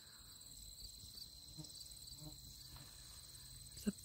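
Crickets chirring steadily and faintly, a thin high-pitched drone with a light, even pulse.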